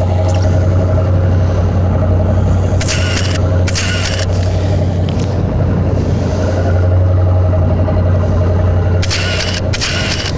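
Motorboat engine running at a steady cruise, a constant low drone, with a few short hissy bursts about three seconds in, about four seconds in and near the end.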